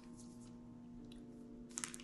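A quiet stretch with faint steady tones, and a few short crunches near the end from a crispy cracker being chewed.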